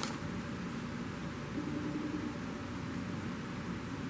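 Steady hiss and hum of room noise, with a faint low tone lasting under a second about one and a half seconds in.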